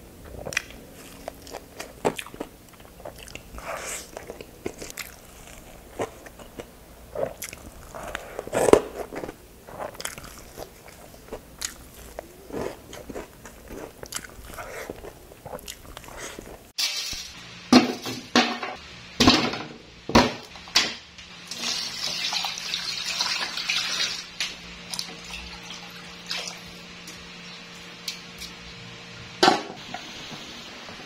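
Close-up eating of crispy fried pork dinakdakan: irregular crunching bites and chewing. About two-thirds of the way in the sound changes abruptly to a cooking scene with a run of knocks, then a steady low hum with hiss and a sharp knock near the end.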